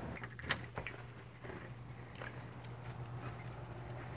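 A door's doorknob turned and its latch clicking, with one sharp click about half a second in and a few fainter clicks and knocks after, over a low steady hum.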